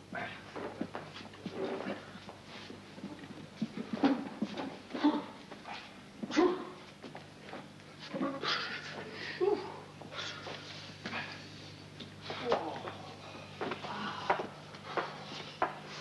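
Several men making short indistinct vocal sounds, grunts, mutters and brief exclamations, mixed with scattered knocks and rustles as they move about, over a steady low hum.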